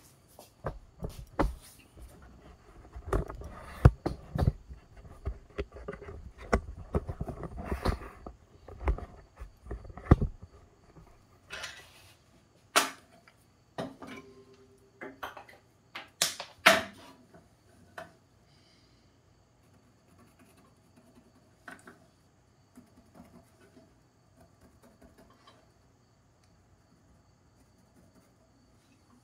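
Clattering knocks and thumps of handling as the camera is carried across the shop for about the first ten seconds. Then a few sharp knocks as a cedar block is set down and moved on a bandsaw's metal table. After that it is very quiet, with a faint steady hum.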